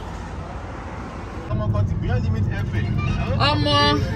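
Outdoor background of faint distant voices over a steady hiss, then about a second and a half in an abrupt change to a car cabin's steady low engine-and-road rumble, with a voice heard over it near the end.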